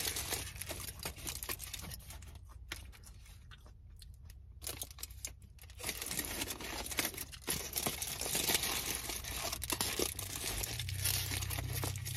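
Aluminium foil burger wrapper crinkling and crackling as it is handled and peeled back, quieter for a few seconds and then busier from about halfway through.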